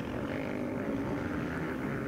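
Distant dirt-bike engines droning steadily, several engine notes overlapping.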